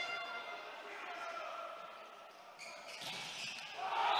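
Volleyball struck and bouncing during a rally, with faint crowd noise echoing in a large sports hall.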